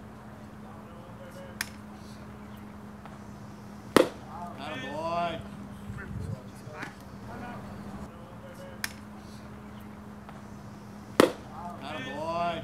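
Two sharp pops of a pitched baseball smacking into the catcher's mitt, about seven seconds apart, each followed by a short shouted call. A steady low hum runs underneath.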